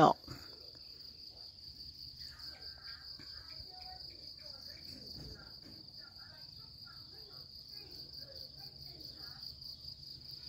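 Insects trilling in one steady, continuous high-pitched note, with faint scattered short chirps beneath it.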